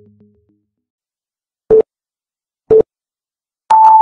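Electronic beeps: two short low beeps about a second apart, then a longer beep an octave higher near the end, in the pattern of a countdown start signal. The tail of a synthesizer jingle fades out at the very start.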